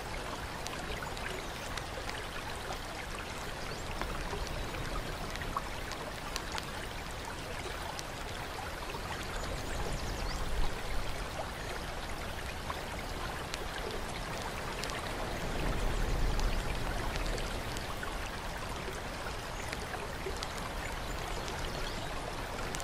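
Steady flowing and trickling water, like a fountain pouring into a bath pool, with scattered small drips and splashes. The water swells briefly a little after ten seconds and again for a longer stretch around sixteen seconds.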